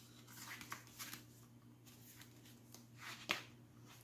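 Faint rustling of cardstock and paper pages being turned by hand in a handmade flipbook, with a few soft flaps and a sharper paper snap a little after three seconds in.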